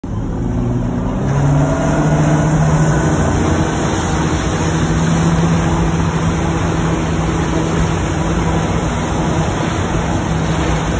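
Wake boat engine throttling up about a second in as the boat pulls the surfer up, then running at a steady speed over the rush of the churning wake.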